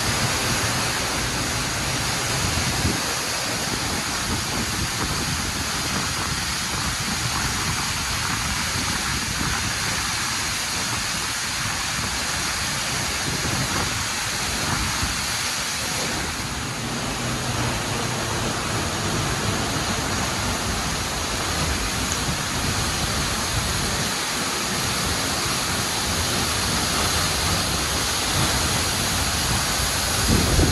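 Steady rush of a large waterfall heard close up from behind its falling curtain: water crashing into the plunge pool and a hiss of spray, with a low rumble that comes and goes.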